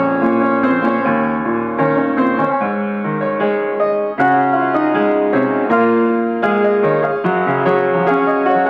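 Upright piano played solo, both hands: a continuous run of melody over chords and bass notes, with a brief break about four seconds in before the next phrase starts.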